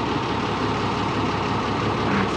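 Volvo dump truck's diesel engine running steadily while its body is tipped up to unload soil.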